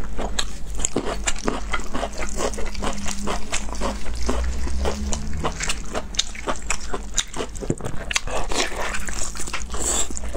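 Close-up eating sounds of sauced honeycomb beef tripe: wet chewing and smacking with a rapid, continuous run of sticky clicks, along with the tripe being pulled apart by gloved hands.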